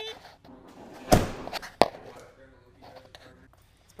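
Two sharp knocks about two-thirds of a second apart, the first louder with a brief ring, amid light clatter.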